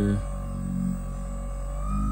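Saker 12-volt cordless buffer polisher running with a pad on car paint, its motor giving a steady whine. Near the end the whine rises in pitch and gets louder as the speed is turned up.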